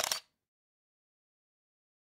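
Complete silence, with the audio muted at an edit: only a brief sound in the first moment, cut off abruptly.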